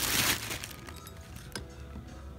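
A brief rustle of packing paper as items are handled in a plastic storage tub, then faint background music with a light click about a second and a half in.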